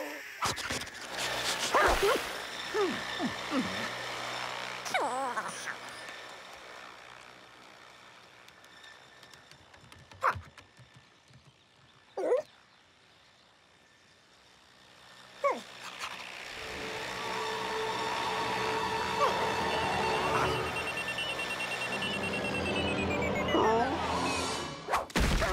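Cartoon sound track: wordless animal-character vocal sounds in the first few seconds, a few short sharp sounds in a quieter middle stretch, then a toy quadcopter drone's propellers buzzing steadily and growing louder over the last several seconds, dropping in pitch near the end.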